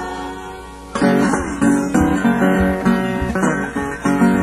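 Acoustic blues guitar fingerpicked in the Piedmont style: a chord dies away, then the picking starts up again about a second in, with a steady run of plucked notes.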